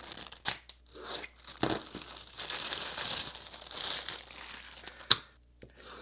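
Small plastic parts packets being crinkled and handled, then a packet slit and torn open, a rustling tearing sound through the middle. A few sharp clicks come through, the loudest about five seconds in.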